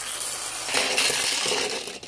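Small plastic Rabbids washing-machine toy spinning and skittering across a tabletop, its wound-up mechanism whirring and rattling steadily, then stopping abruptly.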